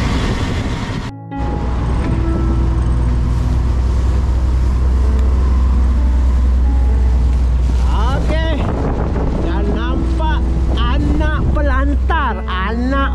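Steady low drone of a fishing boat's engine under way, with wind and water noise, broken by a short cut about a second in. About eight seconds in, music with a wavering melody comes in over it.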